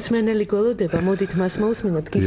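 A man speaking: speech only.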